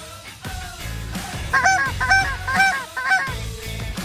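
Goose honks: a quick series of about half a dozen short calls, each rising then falling in pitch, bunched together from about a second and a half in, with a few fainter calls before them.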